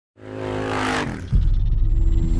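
Motor vehicle engine sound effect: an engine note swells in, then a little over a second in a louder, deep, rapidly pulsing engine rumble takes over.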